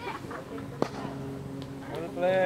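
A single sharp crack of a cricket bat striking the ball, a little under a second in.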